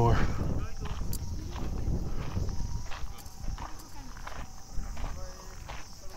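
A person walking outdoors, steady footsteps on a dirt path at an even pace.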